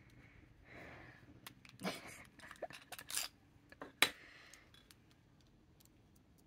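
Clear plastic fountain pen being tapped and handled over a paper journal to spatter ink: a run of light clicks and taps, the sharpest about four seconds in, after a soft scuffing of hand on paper.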